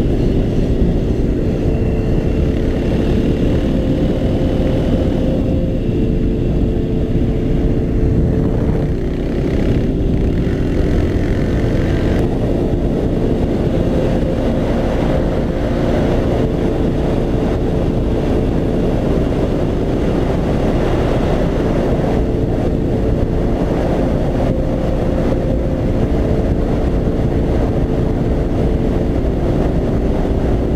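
Kymco Quannon 125 motorcycle's single-cylinder four-stroke engine running steadily at cruising speed, its pitch shifting slightly now and then, with heavy wind rush over the helmet-mounted microphone.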